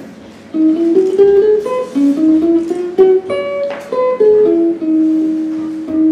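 Archtop jazz guitar playing a single-note melody line, the notes stepping up and down, starting about half a second in and settling on a long held note near the end.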